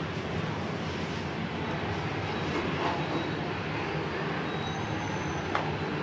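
A steady rushing background noise with a low hum under it, and a single sharp click about five and a half seconds in.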